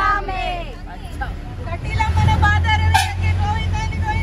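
Bus engine rumbling inside the passenger cabin, growing louder about halfway through, under a group of women's voices cheering and chattering.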